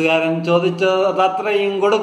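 A man's voice held on a nearly level pitch in a chant-like, drawn-out delivery, with a brief break about halfway through.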